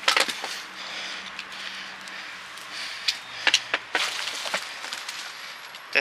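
Handling noises of a gloved hand rummaging through litter: rustling with sharp clicks and knocks, the loudest right at the start and a few more around three and a half to four seconds in.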